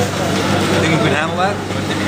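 Voices talking over a steady low drone of a vehicle engine running in street traffic.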